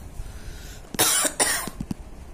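A person coughs twice in quick succession, about a second in.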